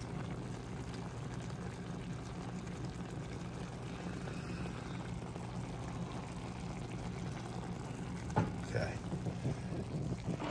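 Chicken broth gently simmering in a metal pan around poached chicken tenders and kale: a soft, steady bubbling over a constant low hum.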